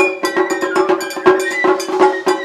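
Japanese festival music (matsuri-bayashi) led by a quick, steady run of clanging strikes on small metal hand-gong or bell-like percussion, several a second, with drum beats underneath.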